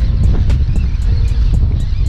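Strong gusting wind buffeting the microphone: a loud, steady low rumble.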